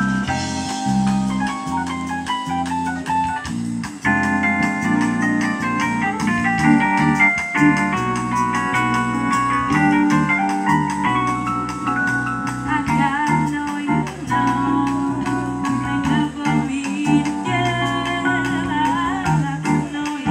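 A live jazz band playing, with an electric keyboard to the fore: held chords and melody lines over a moving bass line.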